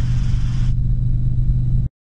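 Steady engine and rotor drone of a piston helicopter heard from inside the cockpit, a constant low hum under a hiss. The hiss drops away about two-thirds of a second in, and the sound cuts off suddenly just before the end.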